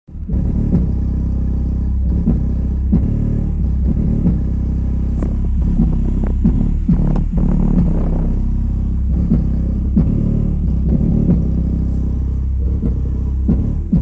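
Logitech Z333 subwoofer playing a deep bass test track at high volume: a heavy, steady low rumble with short punchy pulses recurring about every 0.7 seconds.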